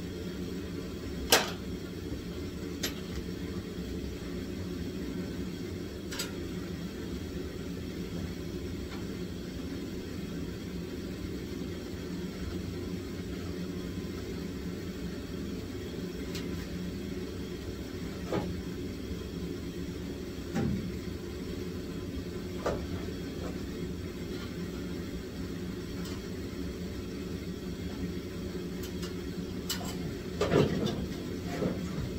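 A steady low mechanical hum runs throughout, with a few scattered sharp clicks and knocks of metal parts being handled on a race car's front end. The loudest is a click about a second in.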